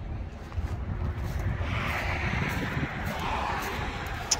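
Road traffic: a steady low rumble, with a passing vehicle's hiss swelling and fading over about two seconds in the middle.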